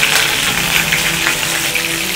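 Hot oil in a non-stick kadai sizzling steadily around a tempering of fennel seeds, green chillies, bay leaf and cinnamon, with many small crackles.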